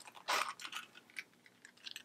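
Zipper of a small round coin purse being worked open in short tugs: a few faint, scattered rasps and ticks.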